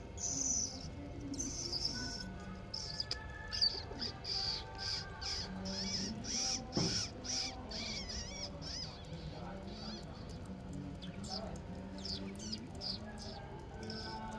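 Young brown mongooses squeaking in rapid, repeated high-pitched chirps while feeding on a raw fish, with a few sharp clicks, one louder about seven seconds in.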